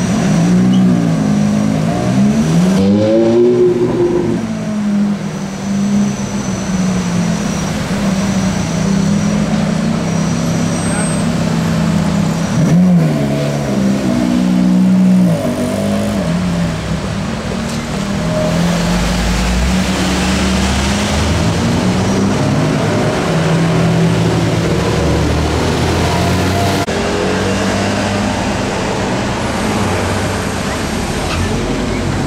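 Ferrari F430 V8 engines idling in slow traffic. There are short throttle blips, a rev rising and falling about two to four seconds in and again around thirteen to fifteen seconds, and a deeper low rumble a little past the twenty-second mark.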